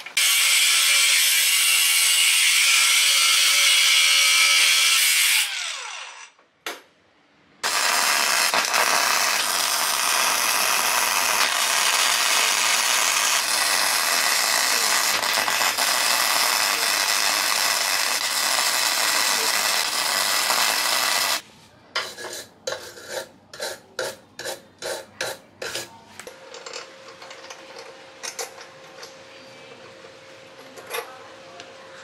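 Electric arc welding on a steel scooter frame, a long steady loud hiss lasting about fourteen seconds. It is preceded by a power tool running about five seconds and spinning down, and followed by a run of short strokes about twice a second.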